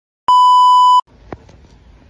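Colour-bars reference test tone: a loud steady 1 kHz beep lasting under a second, cut off abruptly. It gives way to faint outdoor background noise with a single click.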